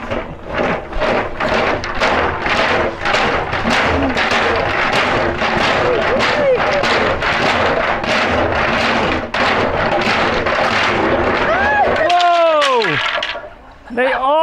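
Oversized Chinese fortune sticks rattling inside a steel 55-gallon drum as it is tilted and shaken, a rhythmic clatter of about two to three shakes a second. Near the end the sticks spill out and a voice exclaims, falling in pitch.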